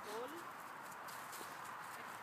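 A dog running across grass and dry leaves, with soft footfalls and rustling.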